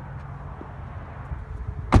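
Rear door of a 2016 Kia Optima shut with a single loud thud near the end, after a low rumble of phone-handling and wind noise.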